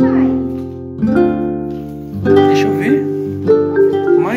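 Light background music of plucked-string and mallet-like notes, with a small child's voice over it in the second half.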